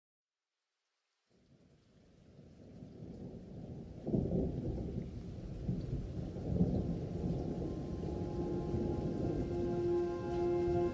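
Deep, thunder-like rumbling that fades in after a second of silence and swells suddenly about four seconds in. Near the end a held chord of steady tones enters over it as intro music.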